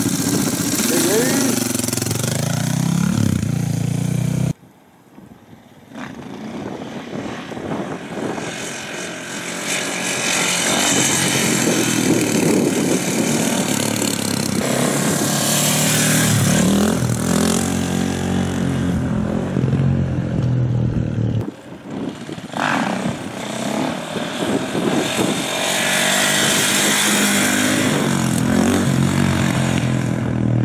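KTM 450 supermoto's single-cylinder four-stroke engine revving up and down hard during wheelies, its pitch rising and falling with the throttle. The sound cuts off abruptly twice, about four and a half seconds in and again about twenty-one seconds in, then picks up again.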